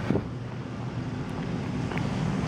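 Steady background noise of a large, nearly empty airport terminal hall: an even hiss with a faint low hum.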